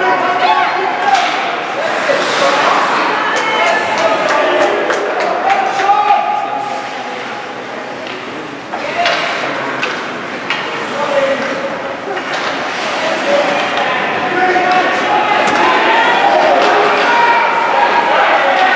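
Ice hockey game heard in an echoing indoor rink: spectators' and players' voices calling out, mixed with sharp clacks and bangs of sticks and puck striking the ice and boards.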